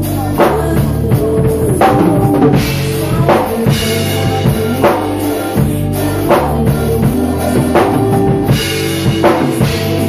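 ddrum acoustic drum kit played in a steady groove, with kick, snare and cymbal hits, over a recorded song whose bass line and held keyboard tones run underneath.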